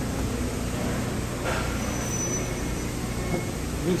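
Steady low background rumble, with a short rustle about a second and a half in.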